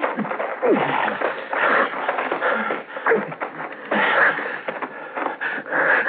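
Radio-drama struggle: men's grunts, gasps and wheezing breaths with scuffling and knocks as the two sentries are overpowered. The sound is narrow and old, with no treble.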